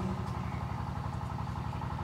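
A steady low hum with a faint even pulse, the sound of a machine or engine running.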